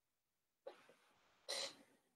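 A person coughing twice, the second cough louder.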